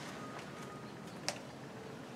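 Quiet room tone with a faint steady hiss, broken by one short, sharp click about a second and a quarter in.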